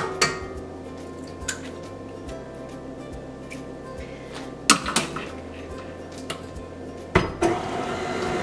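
Soft background music with a few clinks and knocks of eggs being cracked against a stainless-steel stand-mixer bowl. The sharpest, ringing knocks come about five seconds in and again about seven seconds in.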